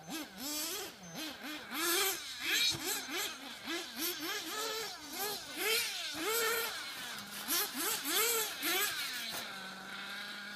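Radio-controlled off-road buggy's small engine revving up and down as it is driven around a dirt track, its buzzy pitch rising and falling about twice a second, then holding steady briefly near the end.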